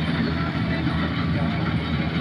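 Diesel engine of a tracked combine harvester running steadily while harvesting paddy: a low, even drone.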